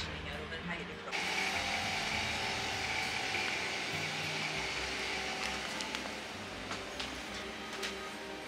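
A steady hiss with a faint high whine starts suddenly about a second in and fades out after about six seconds, over background music.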